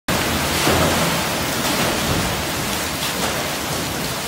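The paddle steamer Maid of the Loch's port paddle wheel turning astern, its floats churning water and throwing spray inside the paddle box. The result is a steady, dense rush of splashing water.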